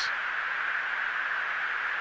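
Steady hiss of a fighter jet's cockpit intercom recording, in a gap between the pilots' remarks.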